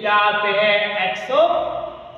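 Only speech: a man's voice slowly reading out the terms of an algebraic expansion, each word drawn out.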